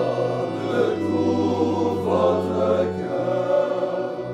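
Men's choir of friars singing together, with low notes held steadily beneath the moving voices.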